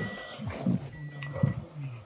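Car's warning chime: a steady high beep of about half a second, repeating about once a second, with low, indistinct voice-like sounds beneath.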